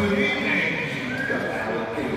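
A seal gives two drawn-out calls, the second starting about a second in, over a person's voice.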